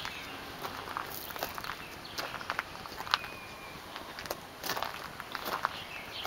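Footsteps on gravel and grass: irregular steps and scuffs of someone walking.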